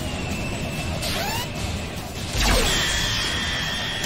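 Animated action soundtrack: music mixed with fight sound effects, including a sharply falling whoosh that ends in a loud boom about two and a half seconds in, followed by held high tones.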